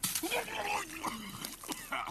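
Stifled laughter: a person whimpering and breathing hard while trying not to laugh.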